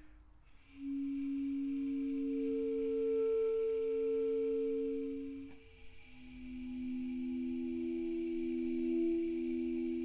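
Basset horn sustaining two pitches at once in long, smooth held tones: one pair of notes for about four seconds, a brief break a little past halfway, then a new, closer-spaced pair held to the end.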